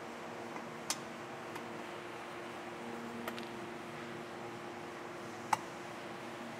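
Plastic push-in clips of a Toyota Tacoma's lower front bumper trim clicking as the piece is worked loose by hand: three short, sharp clicks, the loudest near the end, over a steady low hum.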